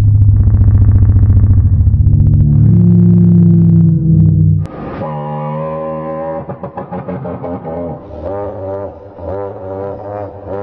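Sound-designed reconstruction of a Tyrannosaurus rex call, made by mixing crocodile and bird sounds. It opens with a loud, deep, pulsing rumble of about four and a half seconds, then turns to a quieter, higher droning call whose pitch wavers rapidly.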